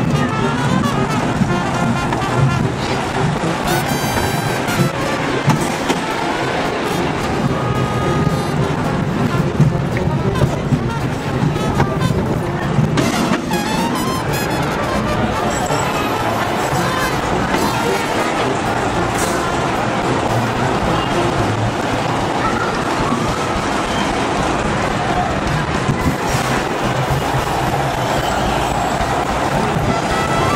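Wild-mouse roller coaster car running along its steel track, a steady rumble with clicks and rattles, mixed with wind on the microphone.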